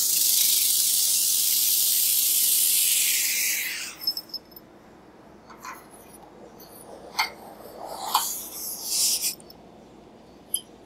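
Cold helium gas hissing loudly out of the open end of a liquid-helium transfer line, the plume that shows liquid helium has come all the way through the line. The hiss cuts off suddenly about four seconds in, followed by a handful of short clicks and knocks of metal fittings at the magnet's neck.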